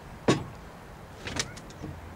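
Knocks on the hull of a small rowing boat as a man shifts and handles it: a sharp knock about a third of a second in, then a softer clatter just past the middle, over a low steady rumble.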